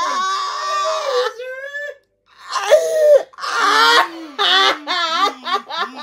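A man wailing and shrieking in long, wavering, high-pitched cries, with a short break about two seconds in, turning into quick repeated laughs in the last second or so.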